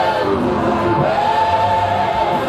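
A gospel vocal group singing through microphones: a male lead voice with backing singers in harmony, rising into a long held note about halfway through.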